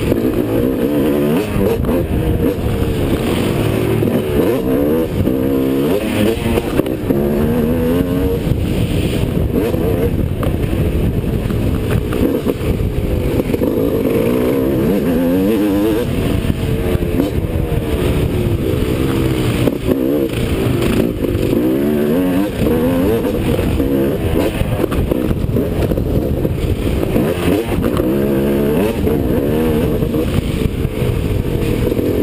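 Motocross bike engine at race pace, its pitch repeatedly climbing under throttle and dropping off, every few seconds, as the rider accelerates, shifts and backs off through the corners and jumps.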